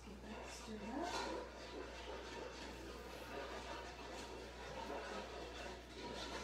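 Faint, indistinct speech over a steady low hum.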